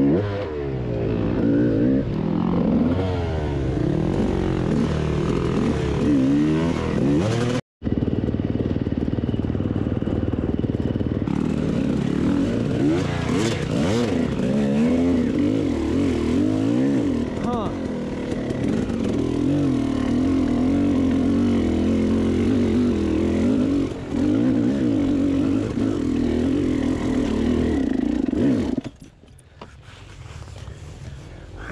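KTM two-stroke enduro bike engine on rough trail, the throttle worked on and off so the pitch keeps rising and falling. The sound cuts out for a moment about eight seconds in and drops away just before the end.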